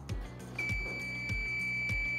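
A steady, high-pitched electronic beep that starts about half a second in and is held for about two seconds, over background music with a steady beat.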